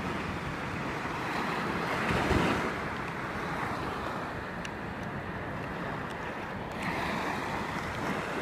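Small waves washing at the shoreline, with wind buffeting the microphone; a steady wash that swells briefly about two seconds in.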